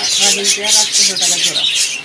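Many small cage birds chirping together in a dense, continuous chatter of short high-pitched calls, with a voice talking underneath.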